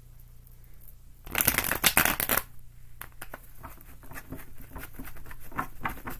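Tarot cards being shuffled by hand: a dense, second-long flurry of card clicks about a second in, then lighter scattered clicks and slides of cards.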